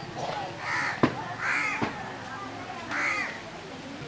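Crows cawing three times, with two sharp clicks and a faint murmur of voices in the background.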